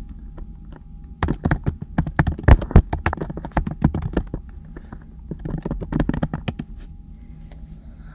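Typing on a computer keyboard: a quick, uneven run of key clicks starting about a second in and thinning out after about six seconds.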